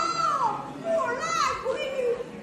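A female Min opera performer's high-pitched stage voice delivering the stylized line "哦…原来是你！" ("Oh… so it's you!"). The drawn-out "oh" glides up and down in pitch, and the rest of the line follows about a second in.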